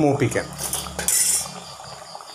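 Metal kitchen utensils clinking and clattering against a cooking pot, with the busiest clatter about a second in.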